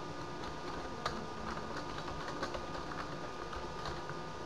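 Computer keyboard typing, irregular keystrokes with pauses, over a steady background hum.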